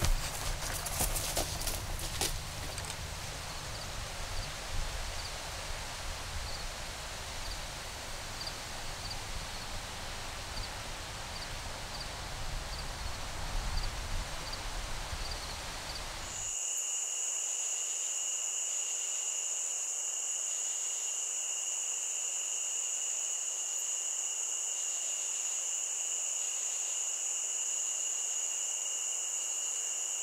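Open-field ambience: a low wind rumble, with rustling through dry plants in the first couple of seconds and a faint insect chirp repeating a bit more than once a second. About halfway through, the sound cuts suddenly to a steady, shrill evening insect chorus of crickets, with a continuous high trill over a lower layer that pulses.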